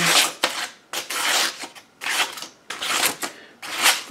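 A knife blade slicing through a sheet of paper in about five short hissing strokes, each about half a second long. It is a slice test of the blade's out-of-the-box edge, which has not yet been sharpened.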